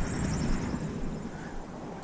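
Wind buffeting the microphone: a steady, unpitched low rumble with no distinct event.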